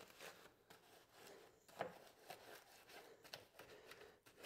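Faint scrubbing of a stiff-bristled wheel brush on a wet, foam-covered alloy wheel and tyre, in short irregular strokes.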